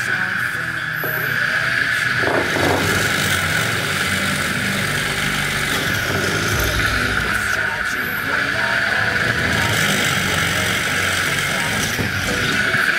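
A rebuilt brushless electric motor, fitted with a drill chuck and a 5 mm twist bit, running steadily with a high whine while it drills into a wooden board. Background music plays under it.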